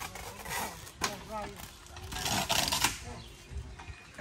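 Faint voices of people working nearby, with a single sharp knock about a second in and a short hissing, scraping sound a little past the middle.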